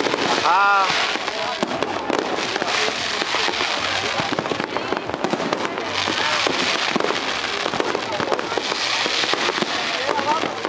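Fireworks display going off, a continuous dense crackle of many rapid sharp cracks and pops from bursting shells throughout.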